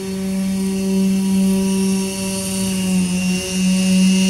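Losi DBXL radio-controlled buggy's engine running at steady high revs while towing a sled through snow, holding one pitch with a brief dip about three and a half seconds in.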